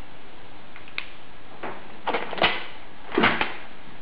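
A few short clicks and knocks, loudest in two clusters about midway and near the end, over a steady background hiss.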